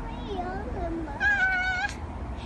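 A young girl's voice: a short low wavering vocal sound, then a loud, high, drawn-out squeal lasting just under a second near the end.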